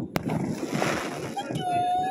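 Fireworks going off, with one sharp bang just after the start over a rough, crunching noise. Near the end comes a held whistle-like tone.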